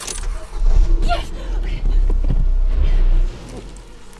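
Car engine running hard with a loud low rumble that cuts off suddenly about three seconds in, while a woman cries out in distress.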